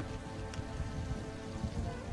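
Steady rain falling, with a music score of long held notes underneath.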